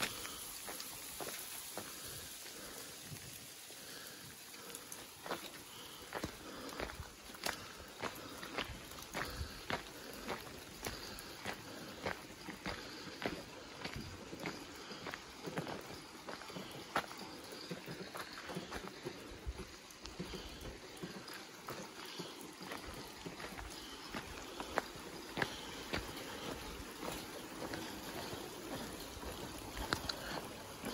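Footsteps crunching along a wet gravel path at an even walking pace, about two steps a second, over a steady patter of rain.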